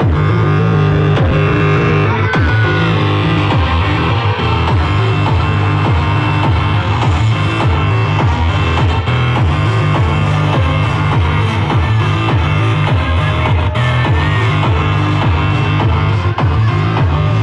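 Loud live electronic music played through a club PA, with heavy, pulsing bass, picked up from within the room.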